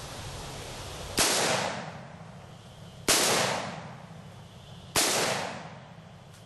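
Three rifle shots from a Bushmaster AR-15 with a 16-inch barrel, fired about two seconds apart, each followed by a short echo that dies away.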